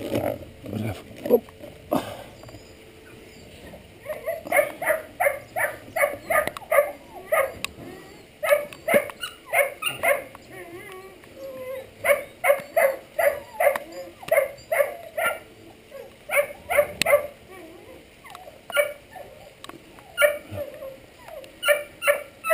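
English setter puppy yipping and whimpering in a long run of short, high cries, about two a second, with a pause before a few more near the end.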